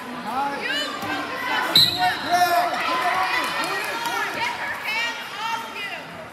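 Several voices shouting over one another in a gymnasium, with one sharp thud a little under two seconds in.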